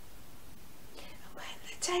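A pause in a woman's speech: faint steady room hiss, a soft intake of breath about a second in, then her voice starting again near the end.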